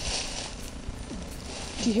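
Lake ice cracking under the sun, sounding like drums or whales, with a faint tone falling in pitch a little after a second in.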